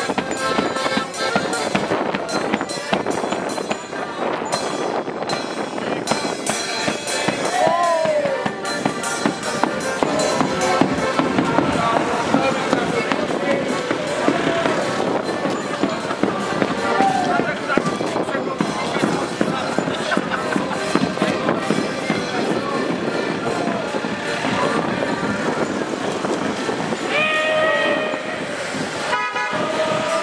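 Street carnival procession racket: drumming and clattering throughout, with voices calling out, and a short horn-like toot near the end.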